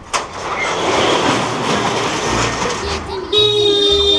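Busy street noise, with a vehicle passing and voices, then a horn sounding steadily for about a second near the end.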